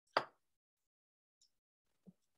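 A single short sharp pop or click a moment after the start, then silence.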